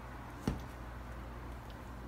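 Quiet room tone with a steady low hum, and one short click about half a second in.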